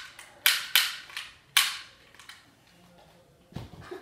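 A quick series of sharp, loud cracks over the first two seconds, then a dull thump about three and a half seconds in.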